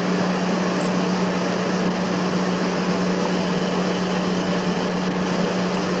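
A steady machine hum: one constant low tone under an even hiss, unchanging throughout.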